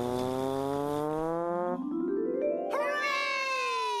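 Cartoon sound effect of an inflatable wading pool being blown up by mouth: a long pitched tone that slowly rises, then a second tone gliding upward from low. Near the end a brighter tone rises briefly and falls away as the pool reaches full size.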